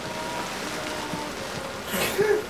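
Steady rain falling, with music playing underneath.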